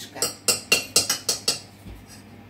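Metal spoons clinking against a stainless steel mixing bowl while stirring cake batter, about six sharp clinks that stop near the end.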